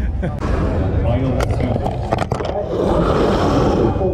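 Handheld camera being jostled and rubbed as it is carried: a quick run of knocks followed by a scraping rustle, over a steady low rumble of wind on the microphone and crowd voices.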